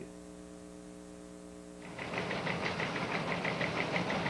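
A steady electrical hum runs through a gap in the programme audio. About two seconds in, a fast, even ticking rhythm starts and grows louder: the opening of a segment's theme music.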